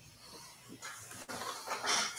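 Faint breathing picked up by a video-call microphone: a soft breathy hiss that starts about a second in and grows louder near the end.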